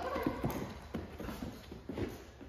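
A dog's paws and a person's footsteps on a rubber-matted floor: a run of irregular soft taps and thuds as the dog jumps up and then trots alongside its handler.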